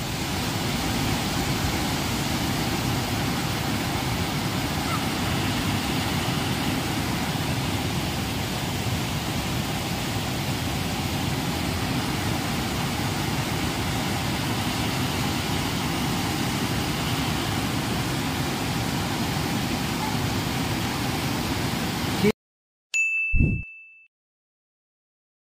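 A flooded hill stream rushes steadily over rocks. Near the end it cuts off abruptly, and a short ding over a low thud follows.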